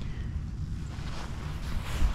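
Wind buffeting the microphone, a low flickering rumble with a faint hiss above it.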